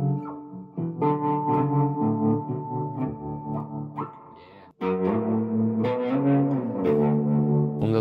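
Electric guitar played through effects, with sustained, overlapping chords and notes. A little past halfway the sound cuts out abruptly for a moment, then the guitar playing resumes.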